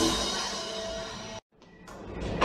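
A live post-punk band's final chord ringing out and fading after the song ends, with one held note in it. About one and a half seconds in, the recording cuts to silence for a moment before faint room noise returns.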